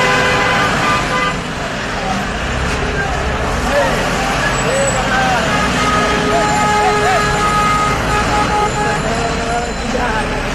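City buses running close past in heavy traffic, with vehicle horns sounding at the start and again in the second half, over the voices of a crowd.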